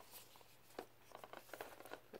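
Faint, scattered small clicks and rubbing of a DVD case being handled and pulled at while it is stuck in its outer box.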